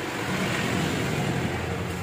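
A steady low mechanical rumble, a little louder in the first half and easing off slightly near the end.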